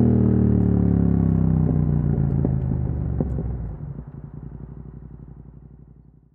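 A 2022 Yamaha YZF-R7's parallel-twin engine running through an Akrapovic full carbon exhaust with the dB killer removed, its revs falling steadily, with a few sharp clicks along the way. In the second half the sound fades steadily away.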